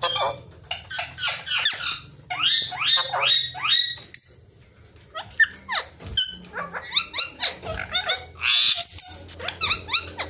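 Alexandrine parakeets giving loud, harsh squawks and chatter: quick runs of calls that slide down in pitch, with a short lull about halfway through.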